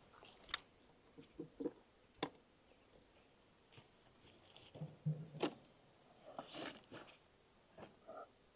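Faint, scattered clicks, taps and rustles from beehive parts being handled: a wooden hive box, frames and a plastic queen excluder. There are a few sharper clicks, the clearest about half a second in, a little after two seconds and just before the end.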